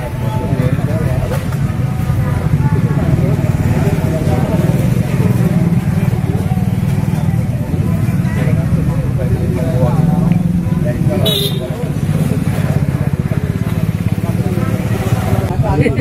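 People talking over the steady low running of a motorcycle engine, with a single short click about eleven seconds in.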